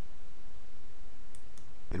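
Steady low hum and hiss of room tone, with two faint computer mouse clicks about a second and a half in.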